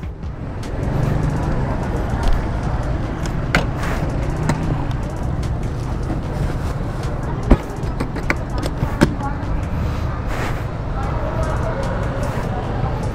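Steady street traffic noise with a plastic bag rustling and a few sharp clicks and knocks as a scooter's plastic top box is opened and packed. The loudest click comes a little past halfway.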